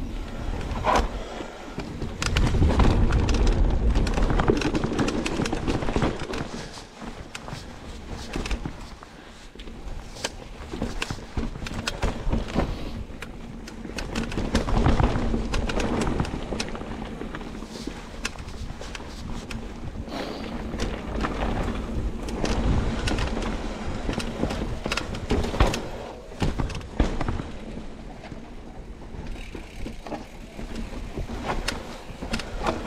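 Mountain bike riding down a rough dirt and rock trail: tyres rolling over the ground with a steady run of rattles and knocks from the bike, in surges of heavier rumble.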